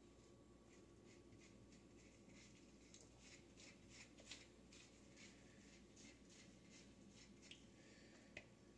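Near silence, with faint, quick, soft strokes and rustles, several a second and a little louder in the middle: bleach being worked through wet hair by brush and gloved fingers.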